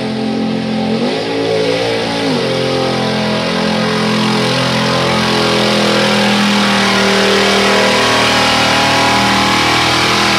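Mud bog pickup's engine revving hard under load as the truck churns through deep mud. The revs dip and climb in the first couple of seconds, then hold high and steady.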